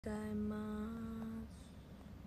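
A young woman humming a short phrase of a few steady notes for about a second and a half, then a quiet room.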